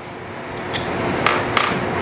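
Tools being handled on a wooden workbench as a screwdriver is picked up: steady rustling with a few light clicks and knocks about a second in.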